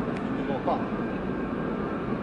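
Steady rumble of an R68A subway train running away down the open-cut track.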